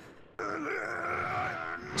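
A monster's long, distorted groan from an anime soundtrack. It starts suddenly about half a second in, wavers for over a second, and fades just before the end.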